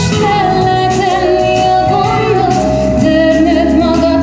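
A woman singing into a microphone over instrumental accompaniment, holding long, wavering notes.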